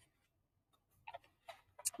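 Quiet, with a few faint, irregular clicks and taps in the second half as a sandpaper letter card is picked up and handled.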